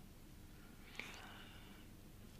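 Near silence in a pause in a man's speech, with one faint mouth click and a brief soft breath about a second in.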